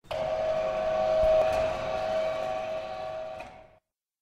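A single held pitched note with a hissy edge, steady for about three and a half seconds, then cut off suddenly.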